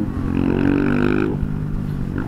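KTM EXC 125 two-stroke engine under way, pulling up in pitch about half a second in, holding briefly, then dropping off as the throttle closes, over a low rush of road and wind noise.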